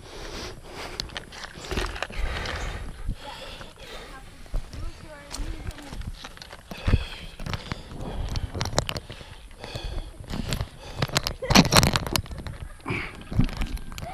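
Indistinct voices in the background, with rustling and handling noise on the camera microphone; the loudest is a burst of rustling near the end.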